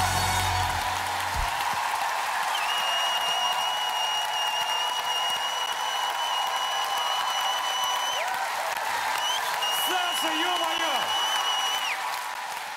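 Studio audience applauding as the song's music ends about a second in. A long steady high tone sounds over the clapping twice, and a voice calls out near the end.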